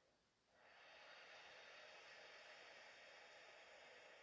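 A woman's single slow, faint breath. It starts about half a second in and lasts about four seconds.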